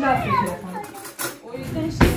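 Children's voices as kids talk and play, with a sharp knock or two.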